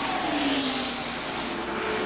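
Stock car engines at full racing speed, one engine note falling steadily in pitch as the cars go past.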